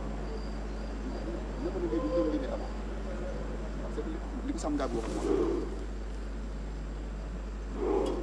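Faint, distant voices in short stretches over a steady electrical hum, with a brief louder burst near the end.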